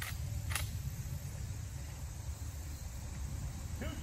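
Steady low outdoor rumble with two faint clicks about half a second apart near the start.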